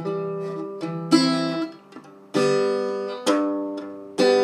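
Harley Benton travel-size acoustic guitar with heavy 13-gauge steel strings, strummed: about five chords, each left to ring and fade, with a short gap about halfway through.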